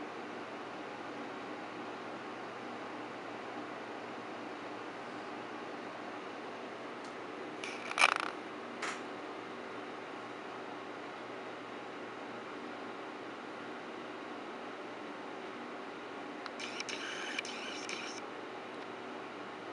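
Steady low background hum. About eight seconds in there is one sharp knock, then a fainter one just after, and near the end a brief light rattle of small clicks.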